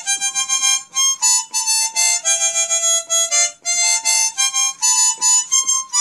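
Solo harmonica playing a melody of short, separated notes, about two or three a second, moving up and down in pitch.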